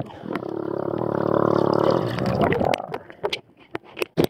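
A child's voice held in one long, muffled call underwater, heard through a waterproofed action camera, lasting about two and a half seconds. A few short splashes follow near the end as the camera breaks the surface.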